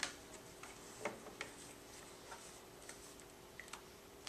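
Scattered faint, irregular clicks and taps of pens and clipboards being handled while answers are written, over a steady low room hum.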